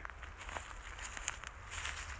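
Footsteps on dry leaf litter and twigs, a few soft crunches and rustles close to the microphone.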